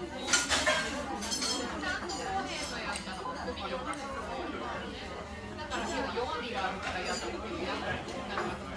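Background chatter of several people talking, with a few clinks of a metal spoon against a metal dessert dish, loudest about half a second in.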